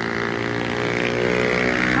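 An engine running steadily close by, a low hum with many even overtones, getting a little louder toward the end.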